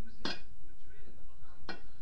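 Two short, sharp metallic clinks about a second and a half apart, each ringing briefly.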